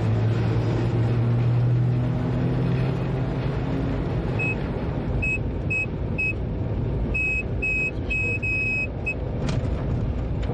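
Electric locomotive running, heard in the cab: a low motor hum rises slowly in pitch over the first few seconds as the train gathers speed under a steady running rumble. From about four and a half seconds in, a string of short, high electronic beeps sounds in two groups, the second faster.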